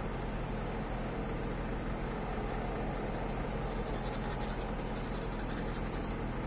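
Steady low drone of idling diesel truck engines, with a faint high hiss joining a little after halfway.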